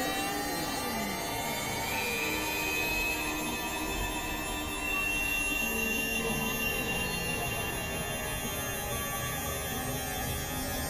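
Experimental synthesizer drone music: a dense, noisy wash with slow gliding tones, one high whine climbing over the first few seconds and then holding steady.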